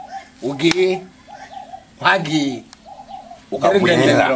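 A dove cooing in the background: a short, faint call repeated about three times, between louder bursts of men's voices.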